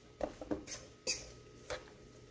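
Mixing in a stainless steel mixing bowl: a handful of short, light clinks and taps against the bowl as a broccoli, cheese and flour mixture is worked.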